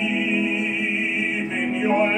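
Classical-style singing with a wide vibrato on long held notes over a sustained chord accompaniment.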